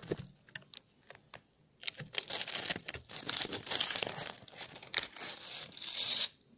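Crinkly plastic wrapper of a bath bomb being handled and crumpled: a few scattered crackles at first, then dense, continuous crinkling from about two seconds in.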